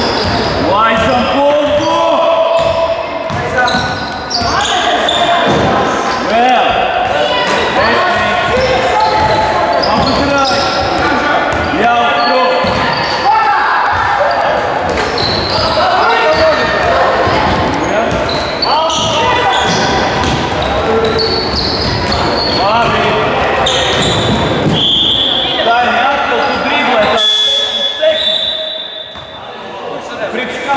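Basketball game in an echoing gym: the ball bounces on the wooden court and shoes squeak, with players and spectators calling out. A steady high referee's whistle sounds about 25 s in and again near the end, stopping play.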